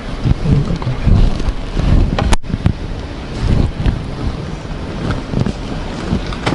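Wind buffeting the microphone of a camera mounted on the outside of a slowly moving vehicle, in uneven low gusts, with a single sharp click about two and a half seconds in.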